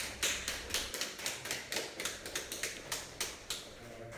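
A quick, even run of sharp clicks, about five a second, that fades away towards the end.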